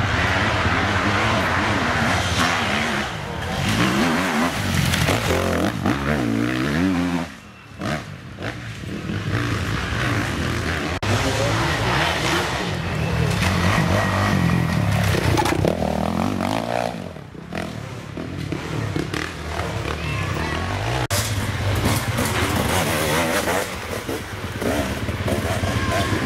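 Enduro motorcycle engines racing past on a dirt trail, revving up and dropping back again and again as the bikes accelerate and shift. The sound breaks off briefly about seven seconds in and again around seventeen seconds.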